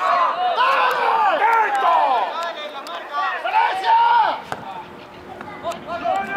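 Several voices shouting and yelling over one another, loud for the first four seconds or so, then easing off, with more shouts just before the end.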